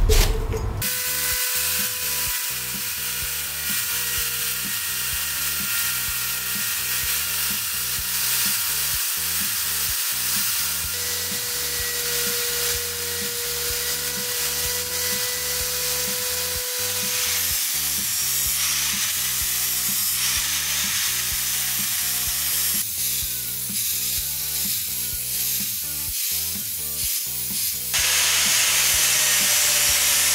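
Power drill spinning a buffing wheel against a steel axe head: a steady whine over a high hiss as the metal is polished. Near the end it gives way to a louder, steady angle grinder with a sanding disc working wood.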